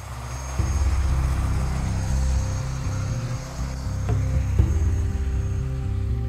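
Helicopter running on the ground, its rotor giving a fast, steady chopping beat over engine whine; the sound swells in during the first half second. Faint music comes in during the second half.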